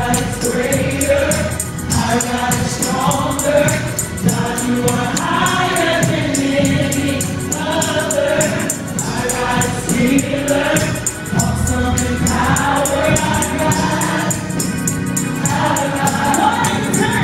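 A gospel praise team of men and women singing together into microphones over the church sound system, backed by instruments with a steady beat.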